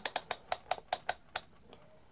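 Rotary range selector switch of a Pros'Kit MT-2017 analog multimeter clicking through its detents as it is turned to the ×10 ohms range: about ten quick clicks that stop about a second and a half in.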